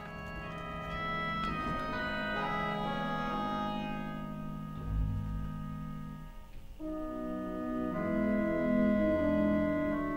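Digital concert organ playing sustained chords, with notes stacking up over the first few seconds and a deep pedal note about five seconds in. It thins out briefly just before seven seconds, then swells into fuller chords.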